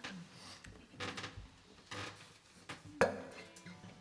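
A quiet pause in a small room, broken by a few soft clicks and knocks, with a sharper click about three seconds in.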